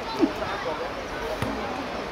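Young players' voices calling out across an outdoor football pitch, loudest just after the start, with a single dull ball thud about a second and a half in.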